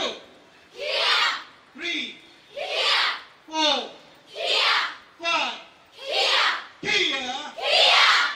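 A large group of women shouting in unison with each strike, a kiai about every second and a half, five shouts in all. Between the shouts a single voice gives a short falling call, the count for the next strike.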